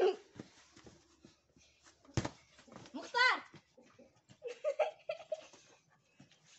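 A child's voice: a high, wavering squeal about three seconds in and brief chatter later, with a sharp knock about two seconds in.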